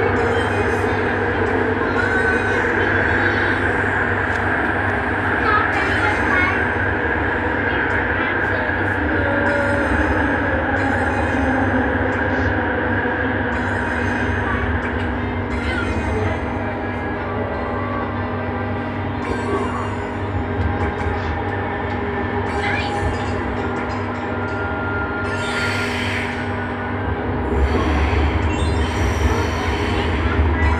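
Bombardier Innovia ART 200 (Innovia Metro 300) linear-motor metro train running through a tunnel, heard from inside at the front. It makes a continuous hum with several steady tones and wheel-on-rail noise, with short hissing flurries every second or so. Near the end the low rumble grows louder as the train nears a station.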